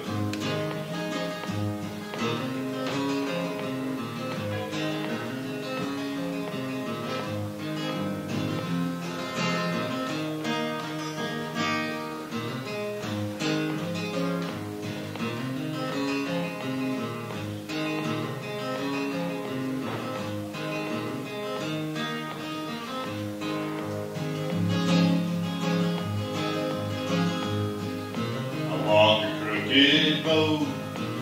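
Solo acoustic guitar playing a song's instrumental introduction, picked notes and chords ringing steadily.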